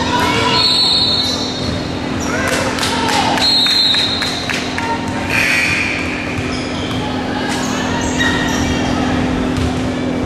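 Basketball bouncing on a hardwood gym floor and sneakers squeaking in brief high squeals as players run, over voices echoing in the gym. A steady low hum runs underneath.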